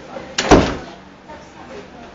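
A single loud bang about half a second in, just after a smaller knock, fading over about half a second. Faint voices can be heard underneath.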